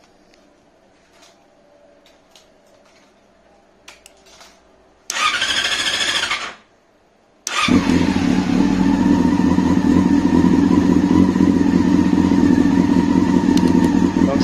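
Motorcycle engine being started: a first burst of cranking lasts about a second and a half and stops. About a second later the engine fires at once and settles into a steady idle.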